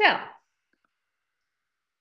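A woman's voice says a single drawn-out "So" with falling pitch, then near silence broken only by two very faint ticks.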